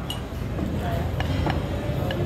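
Steak knife and fork cutting through a slice of prime rib on a ceramic plate, with a few light clicks of metal against the plate, over the steady low hum of a busy dining room with faint voices.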